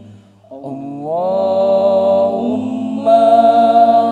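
Sholawat sung a cappella by an Al-Banjari vocal group, with no drums: after a brief breath, a long note slides up about a second in and is held, then a louder held phrase follows near the end.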